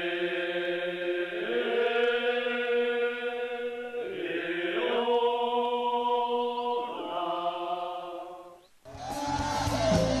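Voices singing a slow ritual chant of long held notes, moving to a new pitch every few seconds, in the manner of a Tsou ceremonial chant. About nine seconds in it breaks off and band music with guitar takes over.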